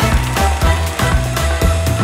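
Outro music with a steady drum beat and a heavy bass line.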